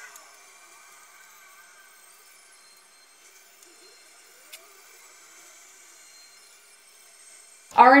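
Quiet room tone with a faint steady hiss and one soft click about four and a half seconds in.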